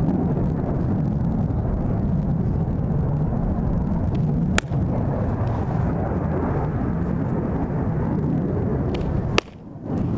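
Steady wind rumbling on the microphone, with a single sharp click about halfway through. Near the end comes a loud sharp pop: a pitched softball smacking into the catcher's leather mitt.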